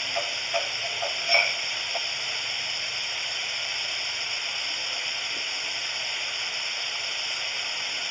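Steady hiss of background noise in the audio feed, with a few brief faint sounds in the first two seconds, the loudest about a second and a half in.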